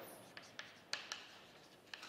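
Chalk writing on a chalkboard: a series of faint taps and short scratches as the chalk strokes out a word.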